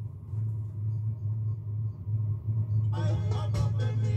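A steady low electrical hum, with ska background music starting up about three seconds in.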